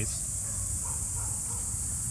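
A steady, high-pitched chorus of insects, over a low steady rumble.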